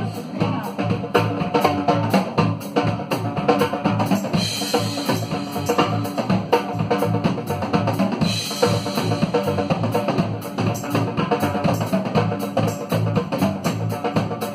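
Live rock band playing an instrumental passage: a drum kit with bass drum and snare keeps a steady beat under electric guitars, bass and keyboard.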